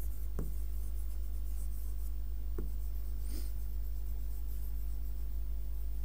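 A pen writing on an interactive display board, with a few faint soft taps over a steady low electrical hum.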